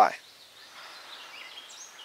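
Quiet outdoor ambience: a steady hiss with faint, short, high bird calls scattered through it.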